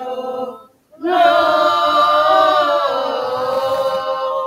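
A group of voices singing a hymn. One phrase ends just after the start, and after a brief breath pause the next phrase comes in louder, about a second in, with long held notes.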